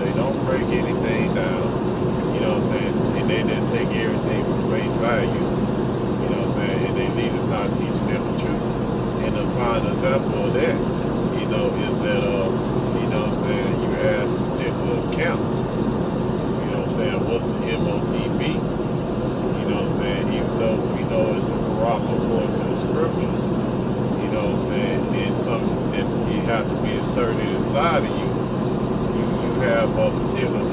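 Steady road and engine noise inside a moving car, with an indistinct voice coming and going over it.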